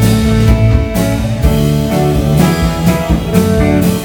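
Live rock band playing, with electric guitars over bass and a drum kit.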